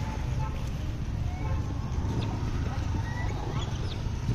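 Outdoor roadside background: a steady low rumble with faint distant voices and a few short, faint chirps.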